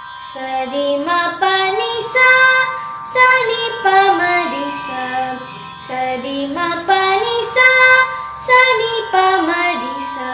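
A boy singing Carnatic phrases in Revathi raga without words, climbing and descending the scale in gliding, ornamented phrases over a steady drone.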